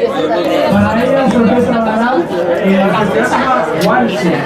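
Several people talking over one another close by: loud, steady chatter with no single voice standing out.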